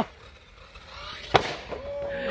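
One sharp crack-like impact about one and a half seconds in: the 8S 4WD RC car landing hard on the concrete after a big jump. A man's laughter trails off right at the start, and a voice begins near the end.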